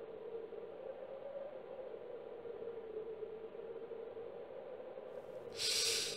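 A steady, quiet humming drone, with a short burst of hiss about five and a half seconds in.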